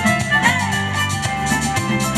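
A live Latin dance band playing: a steady percussion beat under sustained string and other instrument notes.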